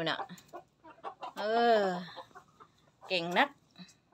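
Silkie chicken clucking as it feeds.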